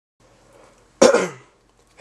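A person's single short cough about a second in, dying away within half a second.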